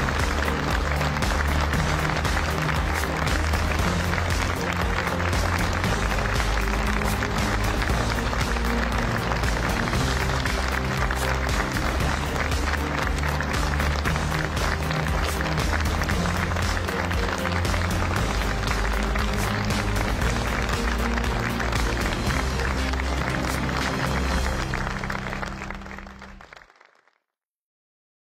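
Closing theme music over studio audience applause, fading out to silence near the end.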